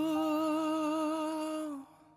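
A voice holding one long sung note with a steady vibrato, the last note of the drama's ending theme song, dying away just before the end.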